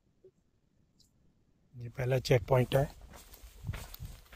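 Silence for almost two seconds, then a man's voice speaking briefly, followed by faint outdoor background noise with a few light clicks.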